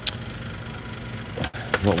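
Steady low hum of a big store's background noise, with one short click at the very start.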